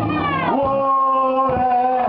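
Male lead singer holding one long drawn-out sung note that slides down in pitch and then holds steady, over acoustic guitars that drop out briefly under the held note.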